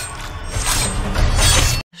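Film soundtrack of a slow-motion battle scene: dense battle sound effects with music, swelling louder, then cut off suddenly near the end.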